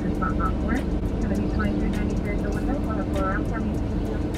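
Car engine idling, heard from inside the cabin as a steady low hum, with the drive-through attendant's voice coming faintly through the order speaker.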